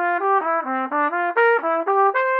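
Trumpet playing a quick run of short, separate notes that step up and down, about six notes a second.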